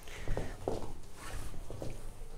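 Footsteps on a floor in a small room: a few soft, irregular steps as someone walks up, over a low steady room rumble.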